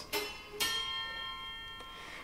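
Grand piano strings set sounding with a metal bar inside the instrument: two metallic strikes about half a second apart, then a bell-like cluster of high ringing tones that slowly fades.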